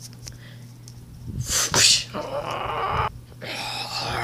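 A person making harsh, breathy monster noises for a toy dinosaur: a sharp hissing burst about a second and a half in, then a longer rasping cry and a shorter one near the end.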